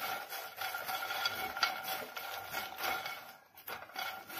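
Silicone spatula stirring makhana (puffed fox nuts) as they dry-roast in a nonstick kadhai: light, irregular scraping and rustling strokes, with a brief pause near the end. The makhana are not yet roasted enough.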